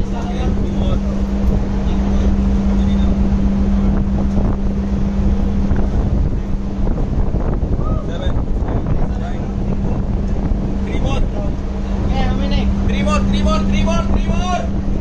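Steady rumble of a ship under way, with wind buffeting the microphone and a steady low hum that drops out for a couple of seconds in the middle.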